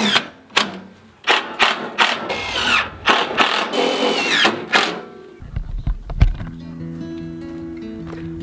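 Cordless drill driving screws through corrugated metal roofing into a wooden frame, in a series of short bursts, some with a rising whine. About five seconds in, background music takes over.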